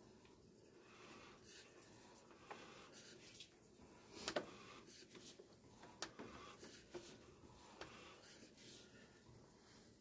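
Near silence: faint room tone with a few scattered faint clicks and rubs.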